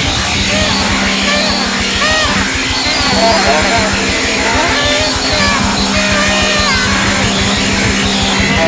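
Rock music, loud and dense, over a steady low bass note, with sliding high pitched lines above it.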